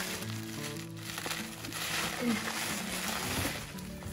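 Plastic bubble wrap being pulled and crinkled off a cardboard box, a dense crackling rustle that fades near the end. Background music with steady tones plays underneath.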